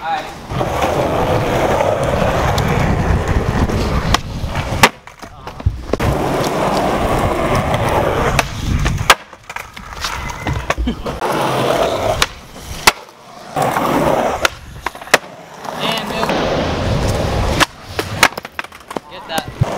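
Skateboard wheels rolling over concrete, broken by sharp clacks of the board popping and hitting the ground about ten times across several stretches, including a slam as a skater falls at the foot of a stair set.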